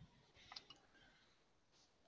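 Near silence with a few faint, short clicks about half a second in.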